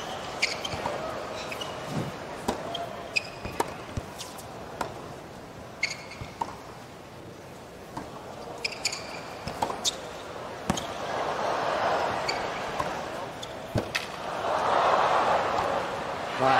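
Tennis rally on a hard court: ball struck by rackets about once a second, with short sneaker squeaks on the court surface. Stadium crowd noise swells twice in the second half as the rally builds.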